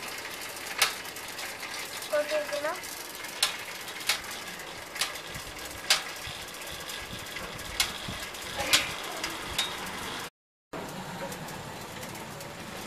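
Bicycle being ridden with sharp, irregularly spaced clicks and knocks over a steady hiss. A brief voice sounds about two seconds in, and the sound cuts out for a moment near the end.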